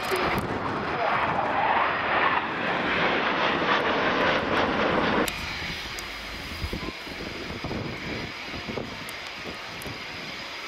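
Jet engines of a formation of three Panavia Tornado jets passing, a loud rushing noise that drops suddenly about five seconds in to a quieter, distant jet rumble.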